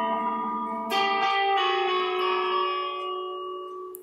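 Guitar music: ringing chords, with a new chord struck about a second in and another soon after, fading away at the end.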